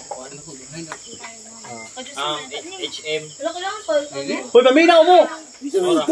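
Steady high chirring of crickets throughout, with people's voices talking over it, loudest a little before the end.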